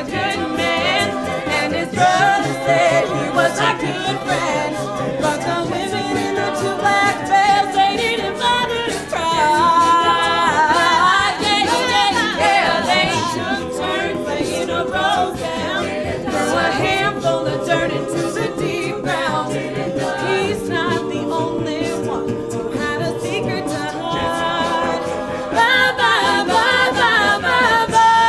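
Mixed a cappella vocal ensemble singing without instruments: a female soloist leads over the group's backing voices.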